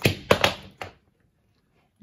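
A few quick, sharp taps or knocks in the first second.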